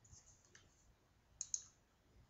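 Near silence broken by two brief, faint clicks close together about a second and a half in.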